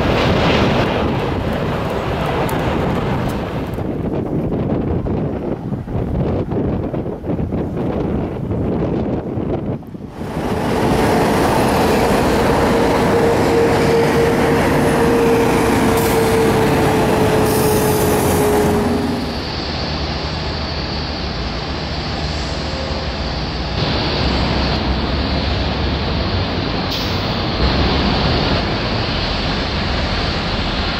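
Jet engines of a Boeing 747 airliner roaring on climb-out, the roar fading over the first ten seconds. Then heavy road traffic on an airport terminal roadway, with a steady whine that drops slightly in pitch, giving way to a duller, steady airport hum after about twenty seconds.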